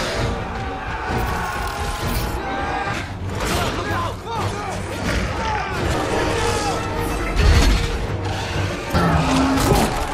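Action-film battle soundtrack: a music score under shouting voices, crashes and impacts, with a heavy boom about seven and a half seconds in.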